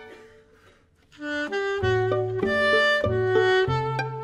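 Alto saxophone with a string quartet playing jazz: a held chord fades to a moment of near quiet, then about a second in the saxophone comes in with a quick run of short notes and the strings join underneath it.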